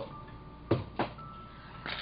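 Two quick wooden clacks, a third of a second apart, as wooden craft sticks are knocked together and gathered up on a hardcover book.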